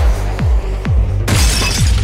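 Electronic intro music with a steady kick drum, about two beats a second, over a held bass. About a second and a quarter in, a sudden shattering crash of noise cuts in and fades away.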